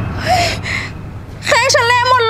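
A woman gasping in dismay, then, about halfway through, a long, high-pitched, wavering cry of distress.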